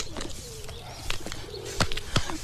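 A pigeon cooing faintly, with a few sharp taps.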